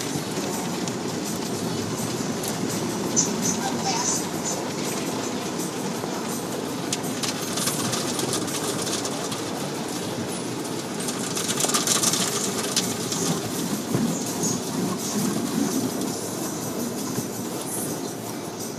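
Automatic car wash heard from inside the car: water spray and wash equipment beating on the windshield and body, a steady rushing that grows louder about twelve seconds in.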